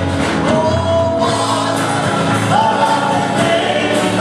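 Live gospel worship music: voices singing and holding long notes over instrumental accompaniment.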